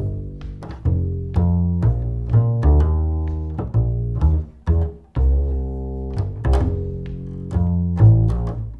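Double bass played pizzicato in a simple jazz two-feel line: plucked low notes, mostly long and left to ring, with a few quicker notes in between.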